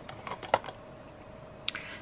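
Lipstick cases being handled in a clear acrylic organizer, giving a few separate sharp clicks and taps, the strongest about half a second in and another near the end.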